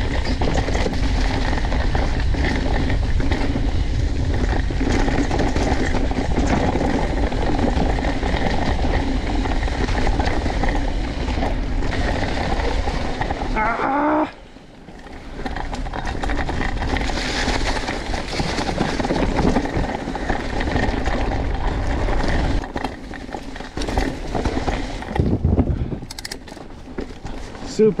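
Mountain bike descending a dirt and leaf-covered trail: wind buffeting the microphone and the tyres rolling over the ground. The noise drops off sharply about halfway through, picks up again, and eases in short spells near the end.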